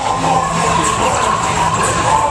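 Dark-ride soundtrack playing loudly: music and sound effects with a wavering, siren-like tone, over a general din of riders.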